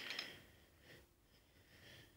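Near silence: faint room tone, with a faint noise fading out in the first half second.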